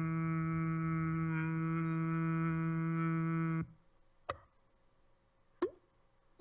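A steady, held low note rich in overtones cuts off abruptly about three and a half seconds in. Two brief, sharp clicks with quick pitch sweeps follow.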